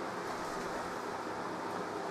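Steady background hiss of room noise, with no distinct events.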